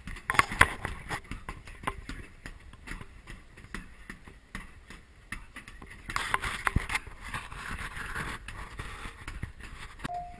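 Rapid, irregular punches landing on a hanging heavy punching bag, several a second, in a fast punch-count drill. A stretch of rustling noise rises over the punches from about six seconds in to about eight and a half.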